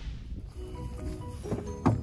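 Quiet tail of an intro music sting: a few faint held notes over a low rumble, with one sharp click shortly before the end.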